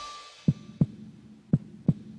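Heartbeat sound effect: two double beats of low thumps over a faint low hum.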